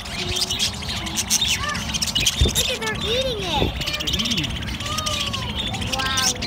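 A flock of budgerigars chattering continuously, a dense mix of quick high chirps, warbles and trills.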